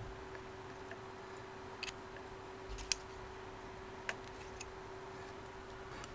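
A few faint, sharp ticks and clicks of small metal hotend parts being handled as a 3D printer nozzle is threaded by hand into its heater block, over a steady faint hum.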